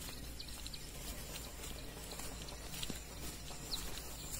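Forest ambience: a steady low wind rumble on the microphone with a scatter of short, high chirps from small birds, one rising chirp near the end.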